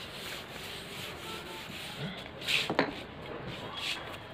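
Wooden-backed chalkboard duster rubbing back and forth across a chalkboard, wiping off chalk writing: a steady scrubbing, with a couple of louder strokes a little after two seconds in.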